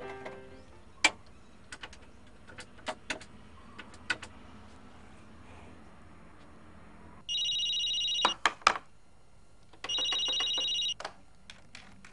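Landline telephone ringing twice, each electronic ring lasting about a second. It is preceded by a scattering of sharp clicks and the tail of piano music at the start.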